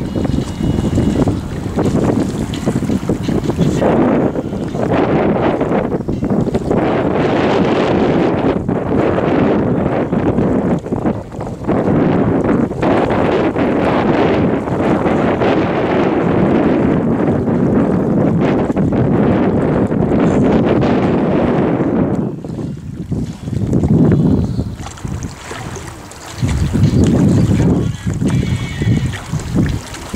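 Loud wind buffeting the camera microphone, gusting irregularly, with a few brief lulls near the end.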